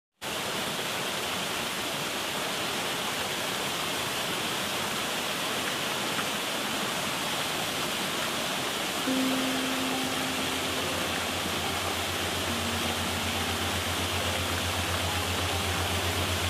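Steady rushing of a waterfall. About nine seconds in, soft background music joins it: a low held drone with a few long quiet notes above.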